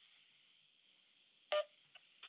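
A pause on a conference-call phone line: faint steady line hiss, broken once by a brief short sound about one and a half seconds in.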